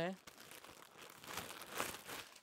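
Clear plastic garment packet crinkling as a top is pulled out of it by hand. The crinkling grows louder toward the end.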